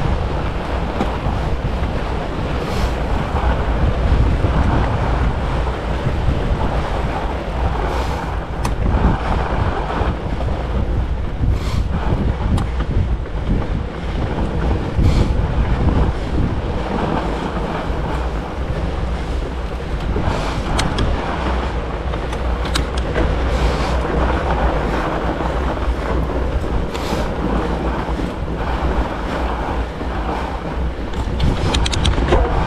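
Wind buffeting a GoPro Hero 10's microphone as a fat bike is ridden along a groomed snow trail, a steady rushing mixed with rolling tyre and drivetrain noise. A few sharp clicks come through now and then.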